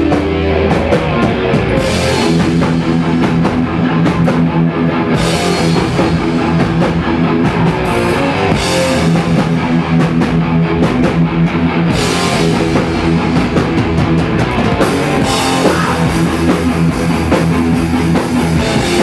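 Live thrash metal band playing loud, with distorted electric guitars, bass and a drum kit, the cymbals crashing in and out between passages.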